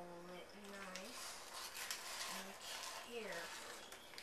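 A person humming softly in a few short held notes, with faint rustling of parchment paper being handled while dough is rolled up in it.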